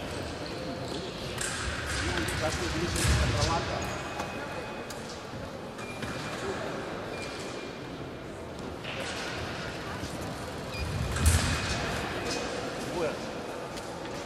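Echoing sports-hall ambience with distant, indistinct voices, broken by two heavy low thuds, one about three seconds in and a louder one about eleven seconds in.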